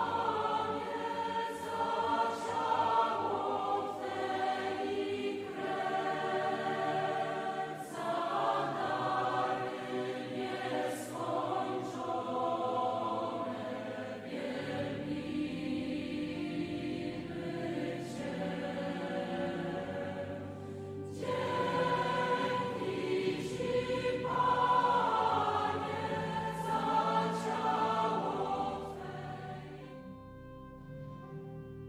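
Choir singing a slow sacred piece in long held phrases, fading out near the end.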